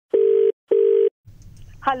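Telephone ringback tone: one double ring of two short, steady beeps at the same low pitch with a brief gap between, the ring cadence of an Indian phone line. It stops as the call is answered, and faint line hiss follows.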